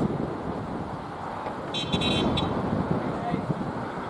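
Outdoor field ambience: indistinct voices over a steady low rumble, with a short high-pitched tone about two seconds in.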